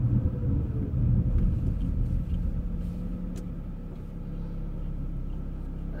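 A car's engine and tyre rumble heard from inside the cabin while driving, low and steady, getting quieter over the first few seconds.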